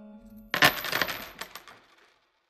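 Closing logo sound effect: the last of a held musical chord fades, then about half a second in comes a sudden shower of small bright clicks and clinks. It is loudest at its start and thins out over about a second.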